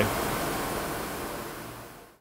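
Steady background hiss of a forging workshop, with no distinct machine or strokes in it, fading out gradually.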